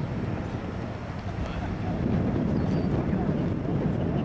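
Wind rumbling on the microphone, with the indistinct chatter of a crowd of onlookers beneath it and a brief high whistle about two-thirds of the way through.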